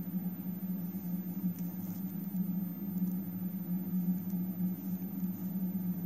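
A steady low hum, with a few faint ticks.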